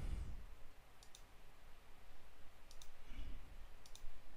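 Computer mouse button clicking: three quick pairs of clicks, the first about a second in and the last near the end, over faint room tone.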